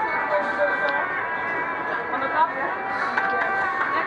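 Background music with steady held notes over a hubbub of many voices.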